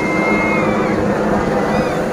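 Military helicopter flying past, a steady engine and rotor drone, with a crowd's voices and a high held tone in the first part.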